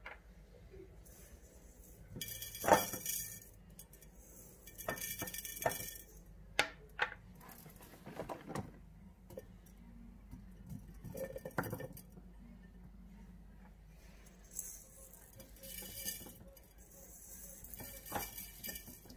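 Black olives being put by hand into a glass jar, clinking and knocking against the glass in scattered, irregular clicks, with a few brief stretches of rustling hiss.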